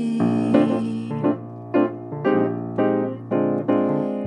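Acoustic piano playing a swing instrumental fill of chords struck about twice a second, with a double bass line underneath, between sung phrases.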